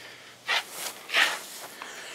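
A person's breathing close to the microphone: two short breaths, one about half a second in and a longer one about a second and a quarter in.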